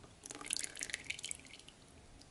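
Melted chocolate pouring from a small pot into chocolate madeleine batter in a glass bowl: a quick run of wet dripping and splashing clicks that starts a moment in and lasts about a second and a half.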